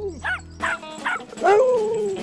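Cartoon dog sounds over background music: a few short pitched calls, then a longer wavering call near the end.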